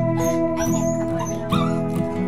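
Background music with held, steady notes, over which a small dog whimpers briefly a couple of times.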